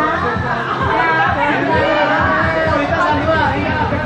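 Music playing loudly under lively chatter from several people talking over one another.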